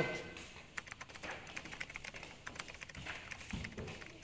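Faint, irregular light clicks and taps, scattered through a few seconds.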